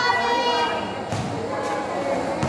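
A basketball bouncing twice on a concrete court, about half a second apart, as a player dribbles at the free-throw line. Over the first second, a long, high-pitched shout from a spectator.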